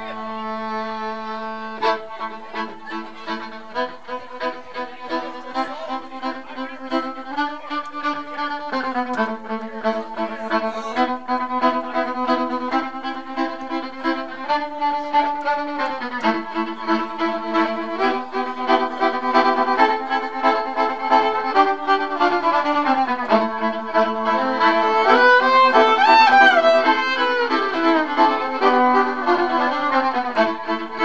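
Fiddle played live, a bowed tune moving note to note over a steady pulse of sharp accents that starts about two seconds in. The playing gets louder and climbs higher about two thirds of the way through.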